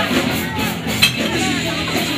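Live band with electric guitar and bass playing under close crowd chatter, with a single sharp clink of glass bottles about halfway through.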